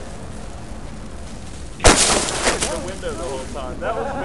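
A single sharp knock about two seconds in, on a small video camera wrapped in foam and tape and heard through its own microphone, with a brief rattle dying away after it.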